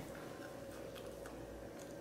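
Faint chewing of a soft marshmallow Peep: a few soft clicks of mouth sounds over a low, steady room hum.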